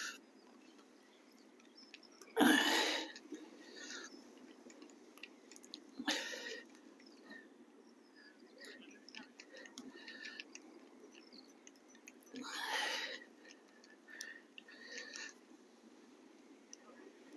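Faint, wet handling sounds as a whole squid bait is worked onto a hook. Three short rushes of noise break in, about two, six and twelve seconds in.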